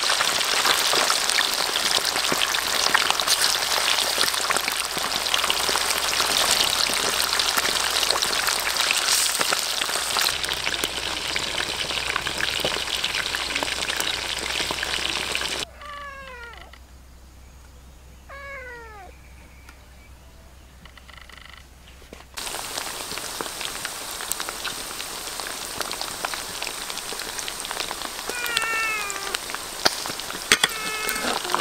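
Fish thrashing in shallow water, a dense, steady splashing. About 16 s in the splashing stops and a porcupine gives two short cries that fall in pitch. From about 22 s fish sizzle and crackle as they deep-fry in hot oil, with a few more falling cries near the end.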